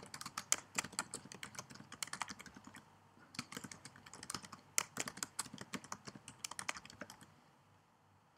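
Typing on a computer keyboard: a steady run of quick keystrokes, with a short pause about three seconds in, ending a little after seven seconds.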